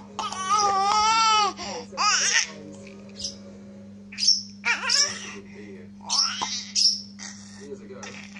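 A baby squealing and laughing: one long high-pitched squeal near the start, then short bursts of laughter.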